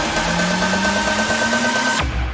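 Electronic dance music transition effect: a slowly rising low synth tone over a dense wash of noise, with a steady high tone held above it.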